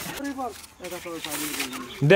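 People talking, fairly quietly, in short phrases.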